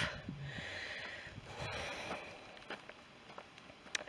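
A faint, drawn-out breath out, close to the microphone and lasting under two seconds, from a walker breathing hard in the heat after a climb, followed by faint outdoor air and a short click at the very end.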